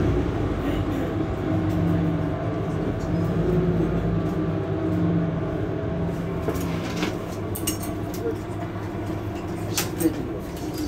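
Mercedes-Benz Citaro C2 hybrid city bus standing with its Euro 6 diesel engine idling: a steady low hum with a pitched drone that eases off about seven seconds in. A few short clicks come near the end.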